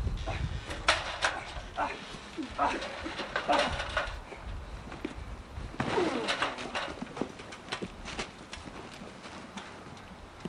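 Backyard wrestling scuffle: a string of sharp hits and thuds of bodies, with yells and cries from the people fighting.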